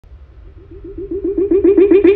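Hardstyle track intro: a pitched electronic synth pulse repeating about eight times a second, fading in from quiet and growing steadily louder.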